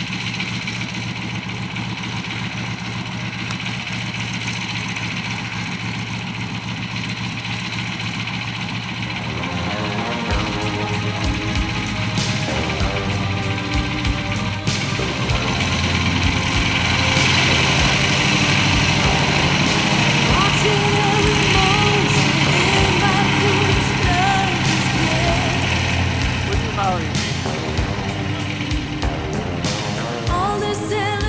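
Stearman biplane's radial engine running at low power, a steady drone. About ten seconds in, music with a regular beat and singing comes in over it and grows louder.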